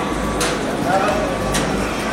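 Amusement arcade din: a steady wash of game-machine noise and distant voices, with two sharp clacks, one about half a second in and one near the end.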